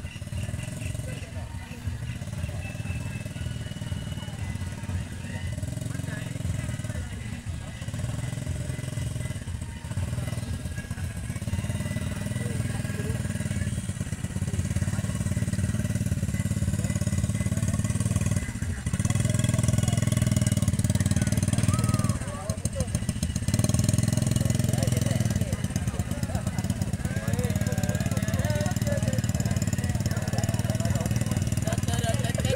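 A small motorcycle engine running slowly amid outdoor crowd voices and shouting; the engine hum grows louder about halfway through.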